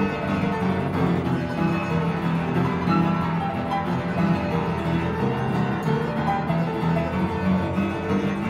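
Upright piano with its front panels removed, played solo: a continuous stream of many notes with no pauses.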